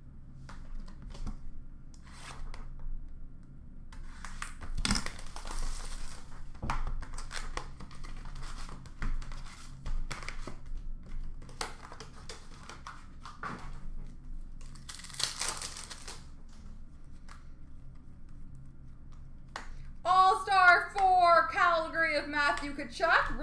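Hockey card packs being torn open, with wrapper crinkling and cards clicking and shuffling. There are two louder tearing rips about five seconds and fifteen seconds in.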